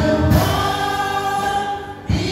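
Congregation singing a hymn together, many voices holding long notes; the singing dips briefly near the end between phrases.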